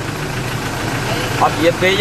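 Van engine idling with a steady low hum, under a voice that starts speaking about a second in.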